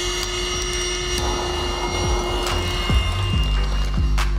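Steady, high-pitched motor whine from a handheld blower pushing out a cloud of smoke, holding one pitch and stopping about three seconds in as a funk track with a deep bass line comes in.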